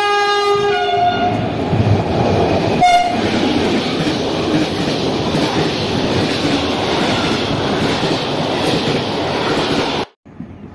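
Freight train sounding its horn as it runs through the station: a two-note blast that changes pitch about a second in, a short second blast about three seconds in, then the steady rumble and clatter of the wagons passing close by.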